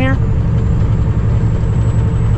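Cummins ISX diesel engine of a 2008 Kenworth W900L tractor running steadily at highway speed while hauling a load, heard inside the cab as a continuous low drone.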